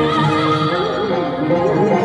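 A woman singing a wordless, heavily ornamented vocal line over an instrumental backing track, her voice wavering rapidly up and down in pitch in a whinny-like warble.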